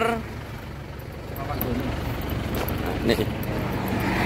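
Steady low rumble of roadside traffic, with faint voices.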